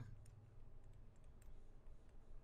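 Near silence with a few faint taps of a stylus on a pen tablet as digits are written.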